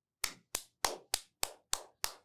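One person clapping slowly and evenly, six claps about three a second.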